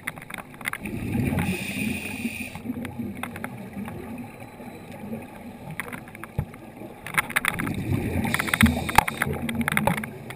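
Scuba diver breathing through a regulator underwater: exhaled bubbles rumble and gurgle in two long bursts, one about a second in and another from about seven seconds, with quieter gaps between breaths.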